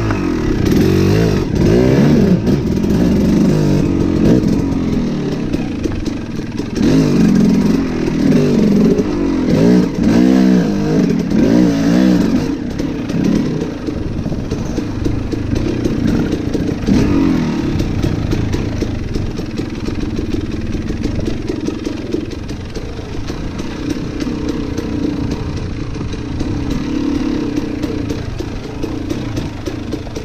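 Dirt bike engine revving up and down hard for the first dozen seconds or so, then running more evenly at riding speed.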